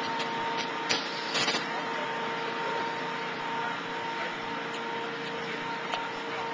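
City street ambience: a steady wash of traffic noise with a constant hum under it, and a couple of brief knocks about a second in.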